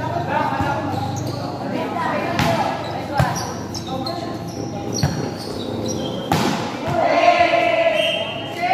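Volleyball rally: a few sharp smacks of the ball being hit through the middle, among players' and spectators' shouts and calls that grow louder near the end.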